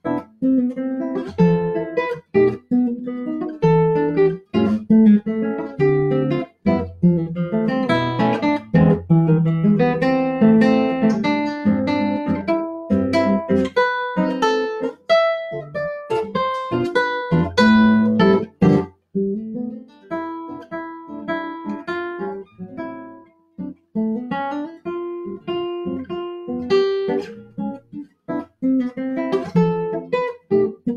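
Solo nylon-string classical guitar playing a lively piece of plucked melody and chords, with a quieter, sparser passage about two-thirds of the way through before the fuller playing returns.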